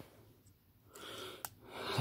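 Near silence, then a short breath drawn in about halfway through, ending in a small click.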